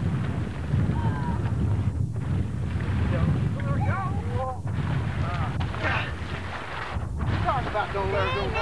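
Wind buffeting the camcorder microphone in a steady low rumble, with faint voices calling out now and then and brief dropouts about every two and a half seconds.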